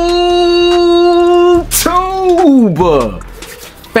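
A man's voice holding one long, steady sung note for about three and a half seconds, then a shorter note that rises and slides down.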